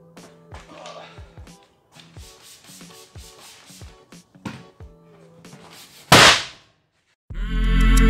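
A cloth rubbing over a car seat in short strokes with small knocks, then about six seconds in a single very loud bang with a short hiss as the seat's side airbag deploys. Loud intro music starts near the end.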